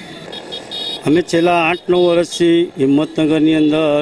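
Speech: a man's voice talking from about a second in. Before it comes about a second of background street noise.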